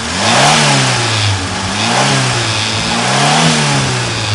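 Fiat car engine, warm, revved up and let back down three times in steady succession with the choke closed. Each time it picks up smoothly, running as it should without the stumble or loss of power it shows otherwise.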